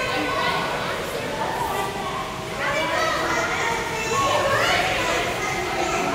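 Children's voices calling and chattering in an indoor swimming pool hall, with high rising calls about halfway through and again near the end, over a steady background wash.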